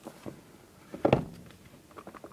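Handling noise from the plastic-wrapped iPad mini box: a few faint rustles and one short, sharp knock-and-rustle about a second in as the plastic wrap is worked off.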